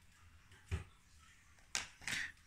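Quiet room with two short clicks about a second apart, from hands handling the stripped copper wire and tools on a wooden table.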